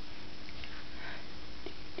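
A short sniff about a second in, over a steady hiss and a faint low hum.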